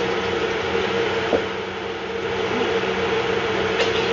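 Steady machinery hum of a ship's interior, with two held tones over a constant noise. A single knock comes about a third of the way in.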